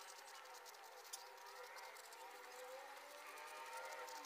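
Near silence, with faint scratching of a pen writing on paper.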